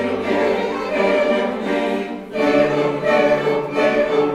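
Mixed choir singing sustained chords with bowed strings (violins and cello) accompanying. A short dip a little past two seconds in before a new chord with a lower bass note comes in.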